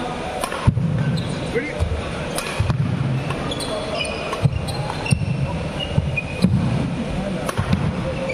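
Badminton doubles rally: a string of sharp racket hits on the shuttlecock, about one a second, with short shoe squeaks on the court mat between them.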